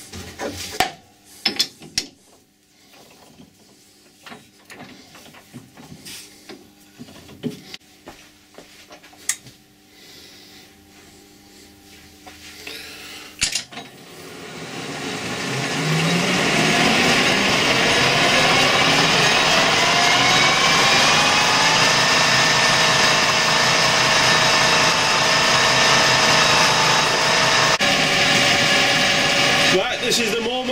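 Clicks and knocks of a copper bar being handled and fitted in a Colchester lathe's chuck. About halfway through, the lathe starts, its whine rising as the spindle spins up, then runs steadily with a whine of several tones.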